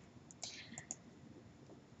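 Faint computer mouse clicks, a few short ticks about half a second in; otherwise near silence.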